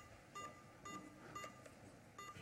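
Faint short electronic beeps, four of them about half a second apart, each a single high tone.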